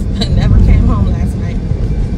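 Low, steady road and engine rumble inside the cabin of a moving car, with a few faint voice sounds under it.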